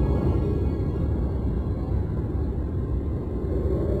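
A steady, fairly loud low rumble with faint music underneath.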